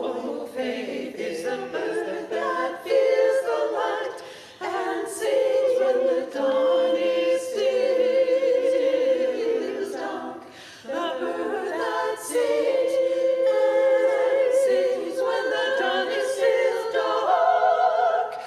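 A choir singing unaccompanied: several voices in long, held notes with vibrato, the phrases broken by short pauses for breath.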